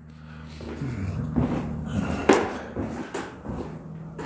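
Footsteps and light knocks on pine plank floorboards, spaced unevenly, over a steady low hum.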